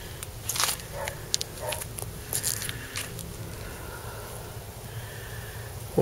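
Several brief scraping, crackling handling noises, about five in the first three seconds, as a crusty, crumbly encrusted lump is picked up and turned in the hand. A faint steady low hum lies underneath.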